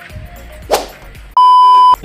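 Edited-in sound effects: a quick swish about three-quarters of a second in, then a loud, steady electronic beep lasting about half a second, over faint background music.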